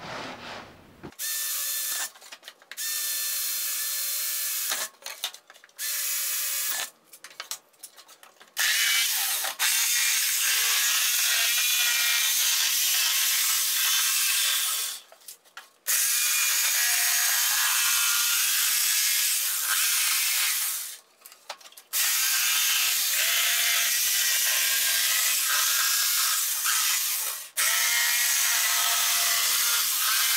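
A cordless drill boring a starter hole through plywood in several short bursts, then a jigsaw cutting a curved line through the plywood panel in long steady runs, stopping briefly three times.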